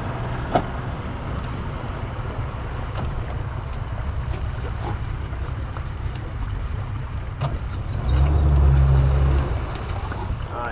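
A boat's outboard motor running slowly at low throttle as the boat eases up to a dock. About eight seconds in the engine runs louder for a second and a half, then drops back.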